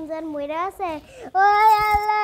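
A young girl's voice in sing-song vocalising that glides up and down, breaking off about a second in, then a loud, long, steady high wail from about a second and a half in, like acted crying.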